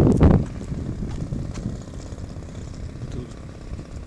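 The DLE 30cc single-cylinder two-stroke petrol engine of a model Sbach aerobatic plane idling steadily, heard from down the runway. A loud burst of low noise fills the first half second.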